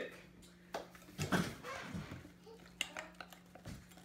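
A few light, scattered clinks and knocks of kitchen utensils and glassware, over a faint steady low hum.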